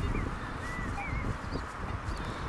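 Outdoor background: a steady low rushing noise with a few faint, short whistled bird chirps that rise and fall in pitch.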